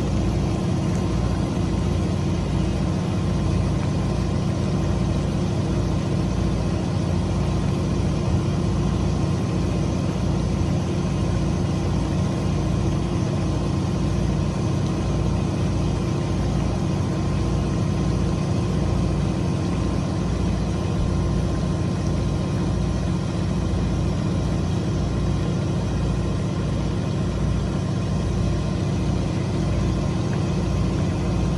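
Boat engine idling steadily, a low, even running sound with a fast throb underneath.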